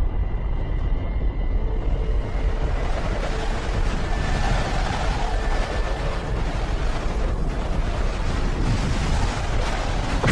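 Documentary sound-effect rumble for two planets closing in on a collision: a loud, steady, noisy rumble with a deep low end, which grows brighter over the first few seconds. Faint held tones sit underneath.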